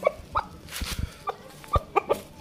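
Belgian Shamo rooster pecking feed from a plastic cup: about five short, sharp taps spread over two seconds, with a brief rustle just before the middle.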